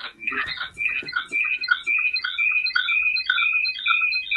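A rapid run of short, high chirping tones, about three a second, in a repeating warbling pattern over the video call's audio.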